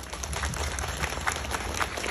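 Audience applauding: many hands clapping in a dense patter that builds slightly.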